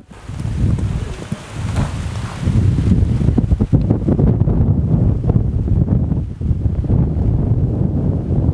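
Wind buffeting the microphone: a loud, gusting low rumble that grows stronger about two and a half seconds in.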